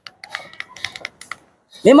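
A run of light, quick clicks as the shaft of a Proton 4G13 distributor is rocked by hand, knocking in its worn shaft bearing. The clicking is the sign of too much up-and-down play, which lets the pickup-coil gap wander and makes the engine cut out.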